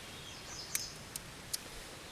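Faint outdoor background noise with three faint short clicks spaced under half a second apart.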